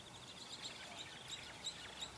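A small bird singing faintly: a fast, high trill with several sharp chirps over it.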